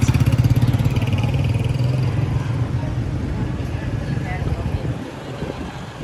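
A motorcycle engine running with a steady low note that fades out near the end.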